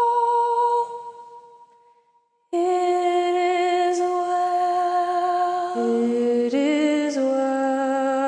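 A woman singing a slow hymn in long held notes. The singing fades out about a second in, and after a brief silence it resumes about two and a half seconds in; from about six seconds in, a second, lower voice sings in harmony.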